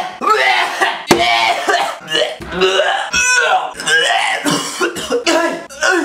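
A young man gagging, coughing and hacking in a string of loud, drawn-out throat noises, an exaggerated fit of disgust at the foul breath of the person he has just kissed.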